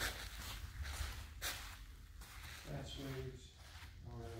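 Footsteps across artificial gym turf with faint scuffs and handling noises over a low room hum, and a brief murmur of a man's voice about three seconds in.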